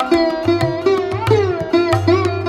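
Sarod playing a Hindustani classical raga: a quick run of plucked notes, some gliding up and down in pitch as the fingers slide on the fretless metal fingerboard, with tabla accompaniment and the low booming tone of the bass drum underneath.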